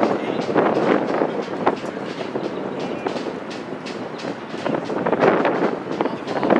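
Outdoor lacrosse game sound: a steady rushing noise with distant voices of players and a scatter of sharp clacks, typical of sticks checking and hitting.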